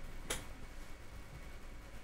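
Quiet room tone with a faint low hum, broken by a single computer mouse click shortly after the start.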